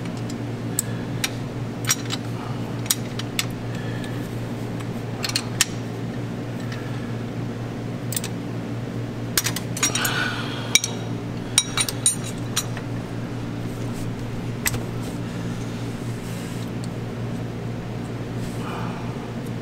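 Scattered light metallic clicks and clinks of hand tools on the rocker gear of a Paccar MX-13 diesel during a valve lash adjustment, over a steady low hum.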